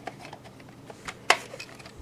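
Hard plastic VHS cassette shell handled and turned over in the hand: a few faint ticks and one sharp click a little past halfway.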